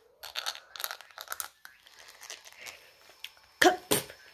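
A pink plastic toothbrush scrubbing back and forth on teeth in quick scratchy strokes, several a second, growing fainter after about a second and a half.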